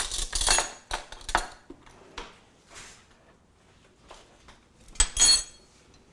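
Metal kitchen utensils clattering in a drawer as it is rummaged through, in a few quick bursts over the first second and a half. A louder metallic clatter with a brief ring follows about five seconds in.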